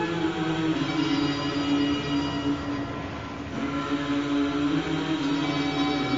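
Instrumental song intro of long held chords that shift in pitch, with no singing yet.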